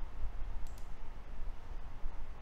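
Two quick computer mouse clicks about two-thirds of a second in, over a steady low rumble of microphone background noise.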